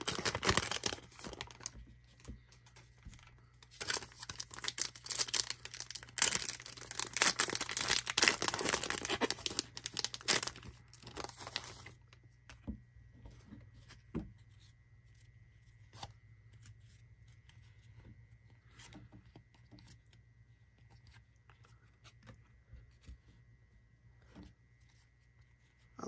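Foil wrapper of a Panini Hoops basketball card pack crinkling and tearing: a short burst at the start, then a longer stretch of about eight seconds from about four seconds in. After that only faint clicks and slides of the cards being handled.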